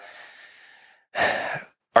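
A man's audible breathing: a soft breath fading away over the first second, then a short, stronger breath just past the middle.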